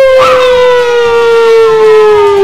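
A long cheering "whoo" from a person's voice, held as one note that slides slowly down in pitch, with a brief second voice chiming in about a quarter second in.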